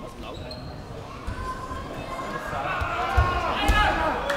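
Dull thuds of wrestlers' bodies and feet hitting a wrestling mat during a takedown, several times. Spectators' shouts grow louder through the second half.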